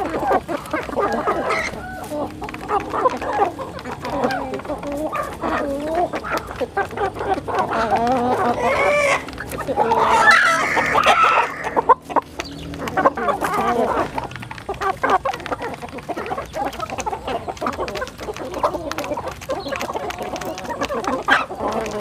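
A flock of chickens and roosters clucking continuously with overlapping calls. Around the middle comes a louder, drawn-out call of about two seconds, a rooster crowing.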